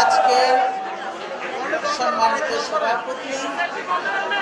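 Speech into microphones in a large hall, with a steady high tone that stops about a second in.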